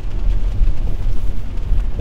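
Steady low rumble of a Kia car driving on a wet road in the rain, heard from inside the cabin.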